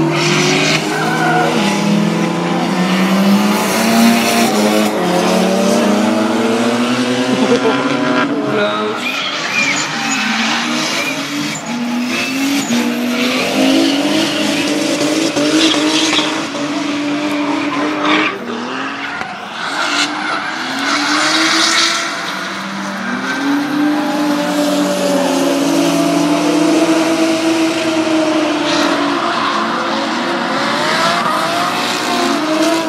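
Drift cars sliding through a corner in tandem: engines revving hard, their notes climbing and falling again and again as the throttle is worked, over the steady squeal of spinning tyres.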